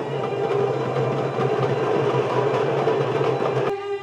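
A group of darbukas (goblet drums) played together in a fast, sustained roll, a dense unbroken rattle of strokes. About three and a half seconds in it cuts off suddenly and a wooden flute comes in with clear held notes.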